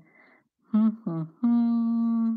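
A woman humming while she thinks: two short hums, then one long steady note.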